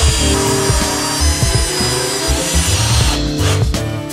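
Background music with a steady beat, over a power drill driving a wood screw into a pine board; the drill noise stops about three seconds in.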